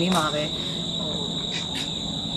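Insects chirring in a steady high-pitched drone, with a woman's voice for a moment at the start.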